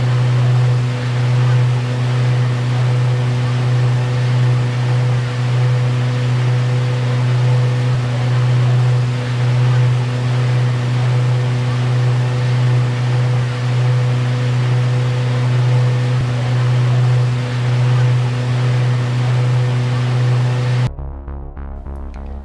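Tour boat's engine running steadily under way, a constant low hum with wind and water rush over it. It cuts off abruptly near the end.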